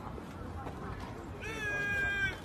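A high-pitched, drawn-out vocal call, about a second long, starting near the end over faint background chatter.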